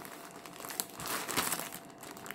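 Plastic film wrapping on a pack of cotton thread balls crinkling and rustling as hands turn it, with a few sharper crackles near the middle.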